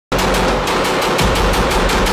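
Pistol firing in a rapid, even string of about eight shots a second, fast enough to be fully automatic fire.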